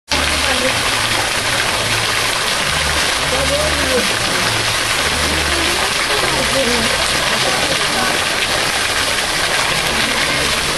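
Water falling steadily into a shallow pool: a constant rushing splash, with voices faintly under it.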